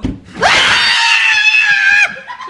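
A woman screaming in fright. After a brief laugh, the scream sweeps up in pitch and is held loud and high for about a second and a half, then cuts off suddenly.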